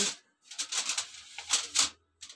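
Aluminum foil crinkling and rustling under hands as vegetable pieces are set on it, with two louder crackles near the end.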